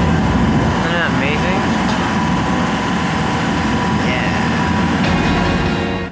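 A boat's motor running steadily while under way, a constant drone mixed with rushing noise. Brief voices can be heard in the background about one second in and again around four seconds.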